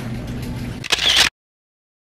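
Supermarket background with a steady low hum, then a short, sharp, bright burst about a second in that cuts off abruptly into a second of dead silence.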